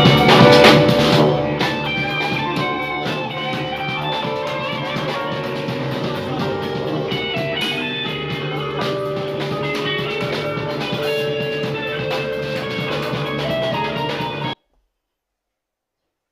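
Live jam-session band recording, electric guitar and keyboard over a steady beat, loudest in the first second or two. It cuts off abruptly near the end.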